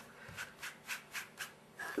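A large sponge ink dauber dabbing textile ink onto cloth or an ink pad, a series of soft, faint taps about three or four a second that stop shortly before the end.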